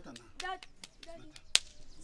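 A single sharp crack about a second and a half in, with a few fainter clicks before it.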